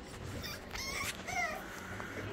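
American Bully puppies whimpering: two or three short, high-pitched squeaks about a second in.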